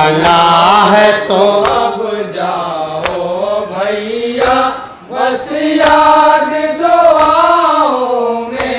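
Male voices chanting a nauha, a Shia mourning lament, in long held, wavering sung lines, with a brief dip near the middle. Sharp slaps of hands striking chests in matam land roughly once a second beneath the singing.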